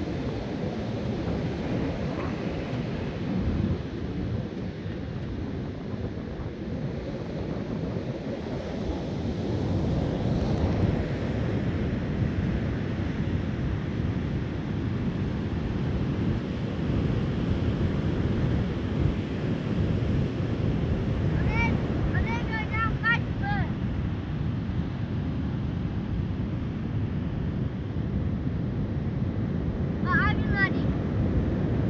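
Wind buffeting the microphone over the steady rush of ocean surf on a storm-swept beach. A few short high-pitched calls come about two-thirds of the way through.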